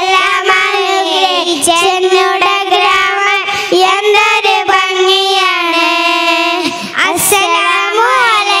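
A small group of young girls singing a song together into microphones, with long held notes and a brief break about seven seconds in.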